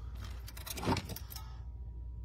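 Light clicks and rattles of loose wires and small metal parts being handled by hand, in a quick flurry through the first half, over a steady low hum.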